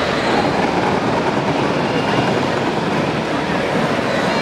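Steady rumbling, rattling din from a pack of battery-powered Power Wheels ride-on toy cars driving around together on a dirt floor.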